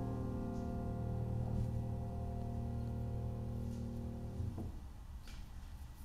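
The song's last chord ringing out and slowly fading, then damped about four and a half seconds in, leaving only faint room sound.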